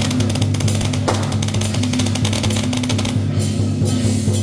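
Loud percussion music with drums and a hand gong struck with a mallet, accompanying a Guan Jiang Shou troupe's dance. A fast, dense run of strikes fills the first three seconds over a steady low rhythmic backing.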